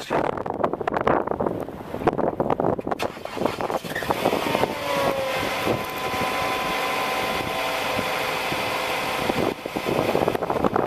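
A vehicle's engine running steadily from about three seconds in, its pitch rising a little soon after. Scattered knocks come before it.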